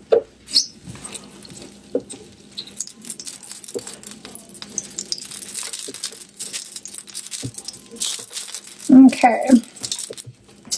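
A spatula scraping and tapping across the flat surface of an electric griddle as lumps of tallow are spread over it, with scattered small clicks and a scratchy hiss. A short vocal sound follows near the end.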